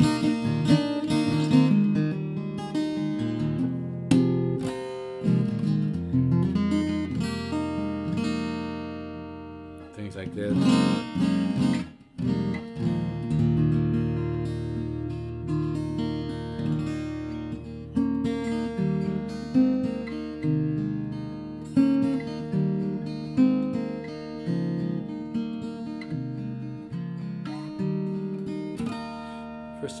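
Ibanez AEG10 acoustic-electric guitar in DADGAD tuning, played through a small 15-watt amp: ringing melodic notes over a sustained low open-string drone. About eight seconds in, a chord is left to ring and fade, and then the playing picks up again.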